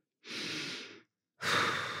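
A woman breathing: two breaths with no voice in them, a soft one about a quarter second in and a louder one near the end that runs straight into her next words.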